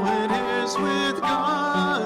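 A voice singing a slow hymn verse to grand piano accompaniment.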